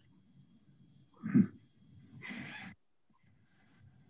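A person's short wordless 'mm' with a falling pitch, followed about a second later by an audible breath, heard over a video-call line.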